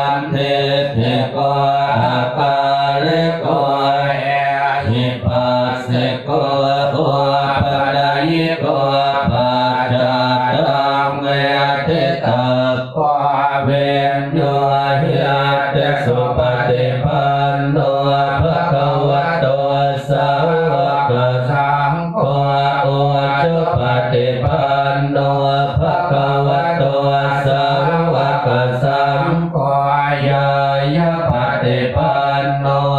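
Buddhist monks chanting Pali verses in unison, a continuous recitation held on one steady low pitch.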